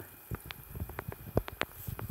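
Faint irregular patter of small water drips and splashes in shallow pond water, with a few low bumps.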